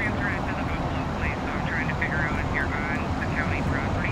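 Small birds chirping in quick, repeated high calls over a steady low rumble of city traffic.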